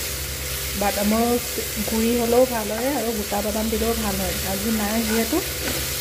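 Diced potatoes, tomato and green chillies sizzling in oil in a nonstick frying pan, stirred with a wooden spatula. A voice talks over the frying through most of it.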